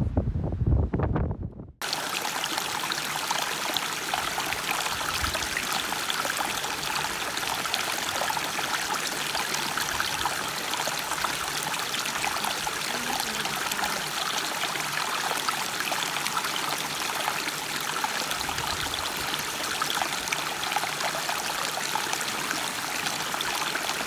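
A short low rumble cuts off about two seconds in, and then a small shallow creek trickles steadily over stones.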